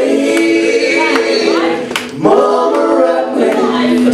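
Several voices singing together in long held notes with little instrumental backing. There is a short break about halfway through, then a new held chord.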